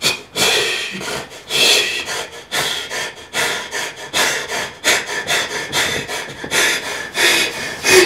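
A person breathing hard and fast in a steady rhythm of short, noisy breaths, about two to three a second.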